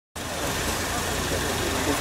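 Car engine idling steadily, with faint voices.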